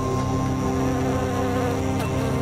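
A swarm of bees buzzing as a steady drone of several held pitches, mixed with background music.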